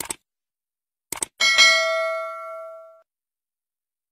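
Subscribe-button animation sound effects: a short click, then a quick double mouse click about a second in, followed by a bell-like ding that rings out and fades over about a second and a half.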